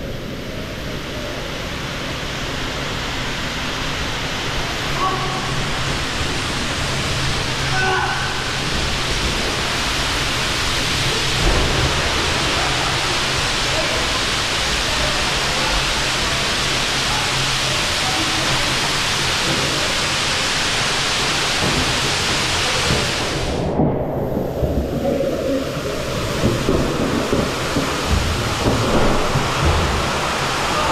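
Steady rush of flowing water in an indoor water-park hall, growing slowly louder toward the top of a water slide. About 24 seconds in, the high hiss drops away and uneven knocks and splashes come through.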